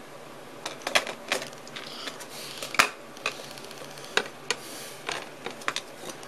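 Irregular light clicks and taps of small hardware and circuit boards being handled during assembly, with a soft rustle about halfway through.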